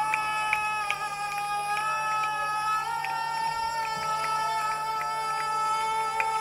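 Live rock band music: several long, droning notes held at a steady pitch, with only a few light ticks over them.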